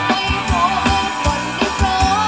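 Thai ramwong dance-band music playing loud, with a steady drum beat of about three strokes a second under a wavering melody.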